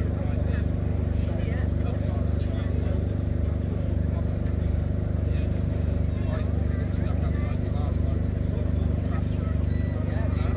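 Steady low urban rumble of vehicles and railway, with indistinct voices of people around.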